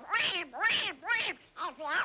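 Little Quacker, the cartoon duckling, in his raspy, duck-like voice: about five quick high calls that bend up and down in pitch.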